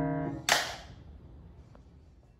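The last piano chord dying away, then a single sharp hand clap about half a second in, ringing briefly in the room before fading out.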